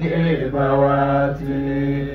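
A man chanting Arabic praise verse in a slow, melodic recitation, drawing out the syllables into two long held notes.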